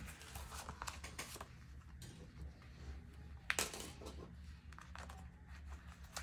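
Quiet handling of paper bills and a paper clip: faint rustling and small taps, with one sharper click about three and a half seconds in, over a low steady hum.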